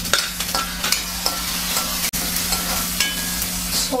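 Chopped tomatoes sizzling in hot oil in a kadai while a metal spoon stirs them, scraping and clicking against the pan, over a steady low hum.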